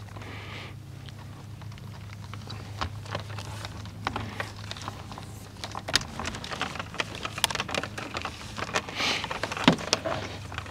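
Insulated electrical wires rustling and ticking as they are fed by hand off their rolls into a PVC conduit fitting: a scatter of small clicks and scrapes that gets busier in the second half, over a steady low hum.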